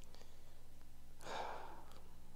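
A person sighing: one breathy exhale a little over a second in, over a low steady hum.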